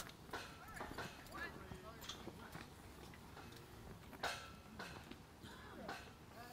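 Quiet outdoor lull with faint scattered voices and short bird chirps, and one soft knock a little past four seconds in.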